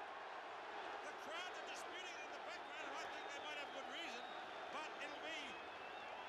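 Rugby stadium crowd just after a try: a steady hubbub of many voices, with individual shouts and high calls rising and falling above it.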